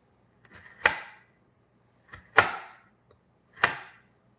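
Chef's knife chopping a pepper on a wooden cutting board: three separate cuts, each a sharp knock on the board with a short scraping tail, spaced well over a second apart.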